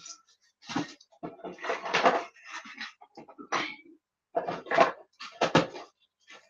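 Irregular knocks and clatter of craft paint bottles and supplies being picked up and set down on a worktable while someone looks for a paint colour.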